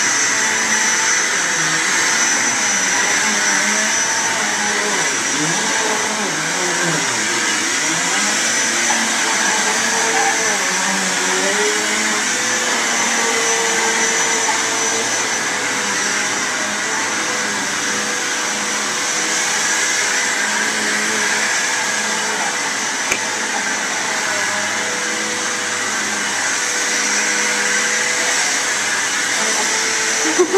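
Upright vacuum cleaner running steadily on carpet, its motor noise topped by a constant high whine.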